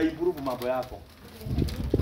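A dove cooing, arched calls in the first second, then a low rumbling noise near the end.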